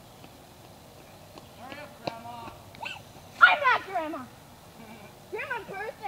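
A high-pitched voice giving wordless wavering calls in three bursts, the loudest a long call about three and a half seconds in that falls in pitch.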